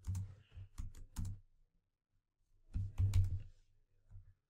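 Typing on a computer keyboard: two short runs of keystrokes with a pause of about a second between them.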